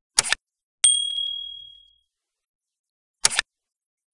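Animated subscribe-button sound effects: a short click near the start and another about three seconds later. Just under a second in, a single bright bell ding rings out and fades over about a second, the notification-bell chime.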